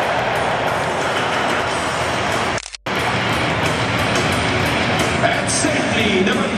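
Loud, steady stadium crowd noise mixed with music and a voice over the PA during pre-game introductions, cut off briefly by a moment of silence a little before halfway.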